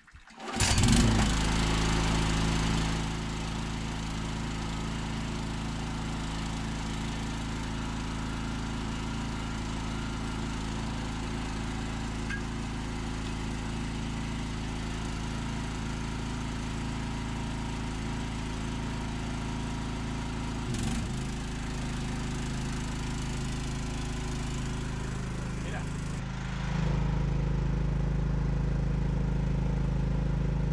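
Small petrol engine of a portable generator started about half a second in, then running steadily. It powers an electric submersible pump. There is a brief change in its note around two-thirds of the way through, and it runs louder for the last few seconds.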